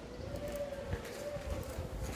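Footsteps on a hard floor, with a few soft low thumps, while a faint, sustained tone wavers slowly in pitch in the background.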